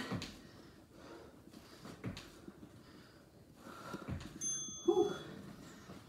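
A woman breathing hard while doing squat hops on an exercise mat, with a couple of soft thuds of her landings. About four and a half seconds in, a short high electronic beep from an interval timer sounds, followed by a brief voiced sound.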